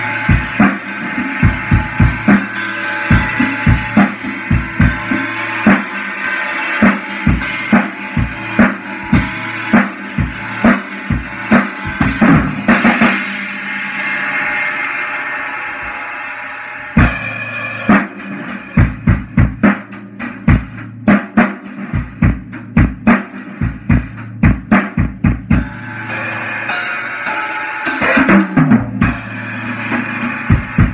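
Acoustic drum kit being played: bass drum, snare and tom hits with cymbals. For a few seconds around the middle the hits stop, leaving a ringing wash, then the beat starts again.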